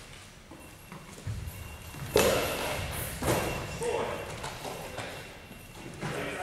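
A goalball with bells inside is thrown across a hardwood gym court. There are sharp thuds on the floor about two seconds in and again about a second later, as the ball strikes the court and a defender drops to block it.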